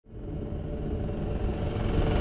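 A deep cinematic rumble drone with a few faint held tones. It fades in at the very start and slowly builds.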